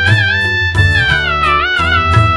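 Instrumental passage of a Tamil devotional song to the Virgin Mary: a held, gently bending melody line over plucked-string accompaniment and a steady bass, with no singing.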